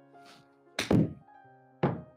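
Golf iron striking a ball off a hitting mat on a full but easy swing: one sharp impact a little under a second in. A second, similar knock follows near the end.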